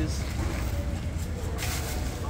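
A plastic bag rustles and crinkles briefly near the end, as packs of meat are handled from a cooler and a black plastic bag. Under it runs a steady low rumble.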